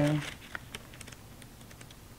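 Faint, scattered light taps and paper handling as a small paper guidebook is slid out of a card-deck box and opened.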